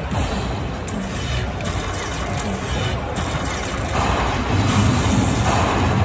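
Casino floor din: music and the babble of many voices mixed with slot machine sounds, growing a little louder over the last two seconds.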